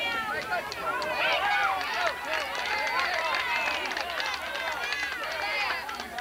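A crowd of spectators and players shouting and cheering over one another, many high voices at once, as a batter runs out a hit in a softball game.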